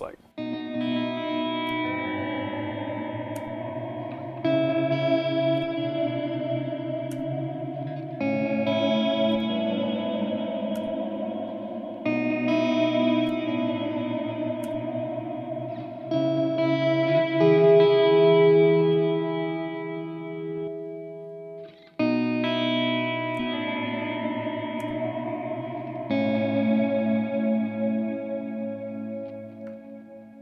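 Electric guitar chords played through a Chase Bliss Audio CXM 1978 reverb pedal, each chord left ringing with a long reverb tail and a new one struck about every four seconds. A little past the middle one chord swells louder and brighter, as the momentary hold pushes the reverb's mix and pre-delay up to full.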